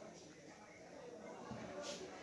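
Faint rustle of a cotton shirt being folded and handled on a cloth-covered table, with a brief brushing swish near the end as the folded shirt is flipped over.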